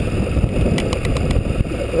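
Suzuki Burgman 650 maxi-scooter riding at road speed: a steady, low rumble of the engine mixed with wind rush over the handlebar-mounted microphone.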